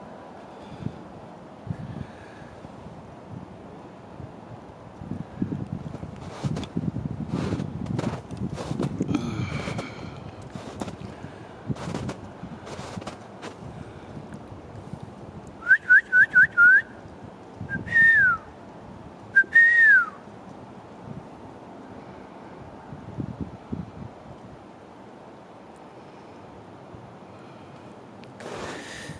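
Footsteps or handling crunching in snow, then loud whistled notes: four quick rising ones in a row, followed by two longer notes that slide downward.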